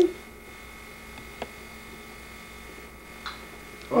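Quiet room tone with a faint steady electrical hum, broken by a single short faint click about a second and a half in.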